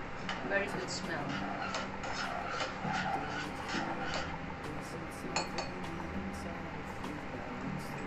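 A metal spoon clinking against the inside of a stainless-steel cezve as Turkish coffee is stirred, many light taps at an uneven pace over a steady low hum.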